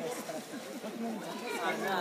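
Faint background chatter of several people talking at once, with no single loud sound.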